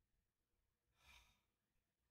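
Near silence: room tone, with a very faint, brief hiss about a second in.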